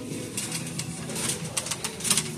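Shop background noise: a low, faint murmur with a few soft clicks and rustles.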